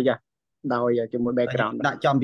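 Speech only: a man speaking Khmer in quick phrases, with a short pause near the start.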